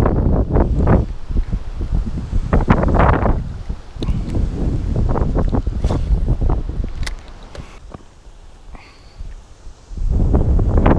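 Gusty storm wind buffeting the camera microphone in loud, uneven rumbling surges, easing off over the last two seconds or so.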